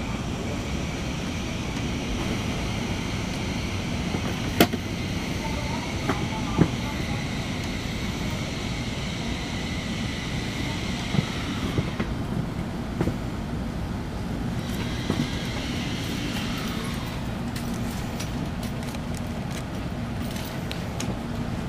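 Steady hum inside an N700-series Shinkansen car standing at a station platform, broken by a few sharp clicks and knocks.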